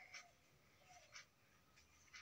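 Near silence: room tone, with two faint brief ticks.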